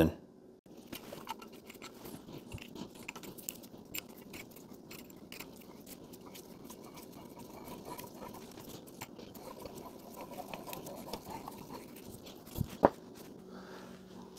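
Screw-type valve spring compressor being wound down onto a valve spring in an aluminium cylinder head: faint metallic scraping and creaking with many small irregular ticks. Two sharper clicks come near the end.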